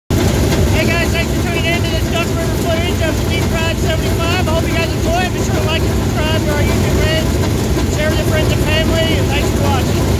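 Dirt super late model race car engines running at idle close by, a loud, dense, steady rumble, with a man's voice talking over it.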